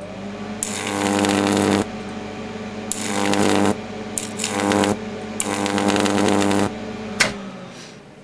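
Neon sign transformer (8 kV, 375 mA) running at full power with a core taken out, humming deeply at mains frequency while its high-voltage arc crackles and buzzes in four loud bursts of about a second each. A sharp snap comes near the end, and the hum stops with it.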